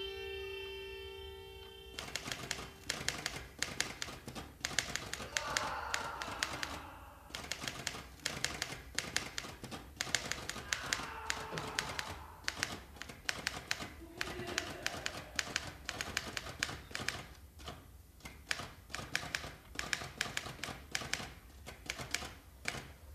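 Typewriter keys clacking in quick, irregular runs of strikes. Before that, a sustained music chord cuts off about two seconds in.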